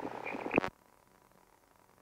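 Faint hiss of the headset intercom feed that ends with a sharp click less than a second in, followed by dead silence.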